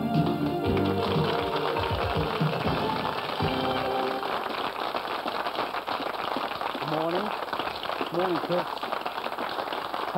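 A keyboard theme tune ends about four seconds in while studio audience applause rises under it and carries on. A voice is briefly heard over the clapping near the end.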